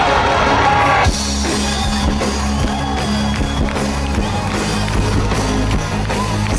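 Live pop-rock band playing on stage: bass, drum kit and electric guitar. About a second in, the sound cuts abruptly from loud crowd noise to the band.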